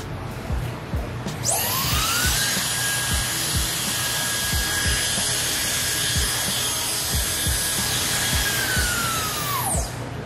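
Gamma Xcell hair dryer switched on at speed three: its motor spins up with a rising whine about a second in, then runs steadily with a loud rush of air and a high whine. Near the end it is switched off and winds down with a falling whine.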